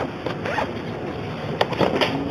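Rustling, scraping handling noise from a handheld camera being moved about, with a couple of sharp clicks near the end.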